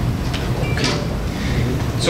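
A steady low hum with a few short clicks, typical of laptop keys being pressed.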